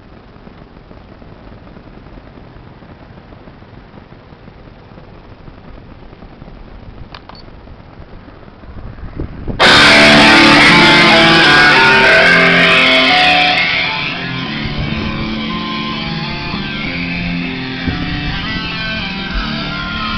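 Rock song with electric guitar playing very loud through a pickup truck's Alpine car audio system, its door coaxial speakers and A-pillar tweeters driven by a four-channel mids-and-highs amplifier. After a quiet stretch of steady hiss, the music cuts in suddenly about ten seconds in at close to full scale, then drops back somewhat a few seconds later as the recording moves away from the truck.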